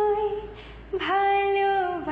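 Background song: a woman singing long held notes. One note trails off, and a new long note begins about a second in.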